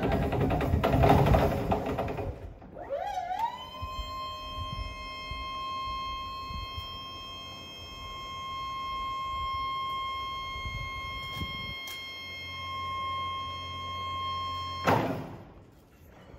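Still EGV S14 electric pedestrian stacker: a couple of seconds of driving noise, then its hydraulic lift pump motor starts with a rising whine that settles into a steady whine as the mast raises the forks. It cuts off suddenly with a thump near the end as the lift stops.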